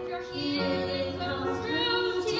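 Female voices singing a song with grand piano accompaniment, the piano's low sustained notes entering about half a second in.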